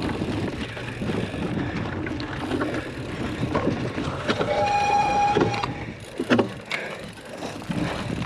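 Cyclocross bike riding fast over bumpy grass and mud: steady tyre rumble and frame rattle with many small knocks. About halfway through comes a steady squeal lasting just over a second, and shortly after it a sharp clatter of impacts, the loudest moment.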